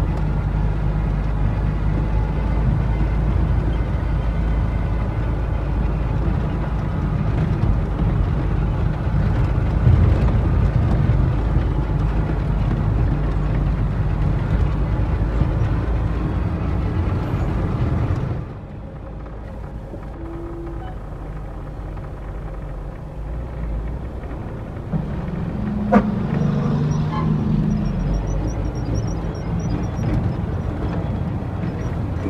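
In-cab sound of an International 9400 heavy truck driving on a rough dirt road: a steady loud engine and road rumble that drops abruptly to a quieter run about two-thirds of the way through, with a single sharp knock near the end.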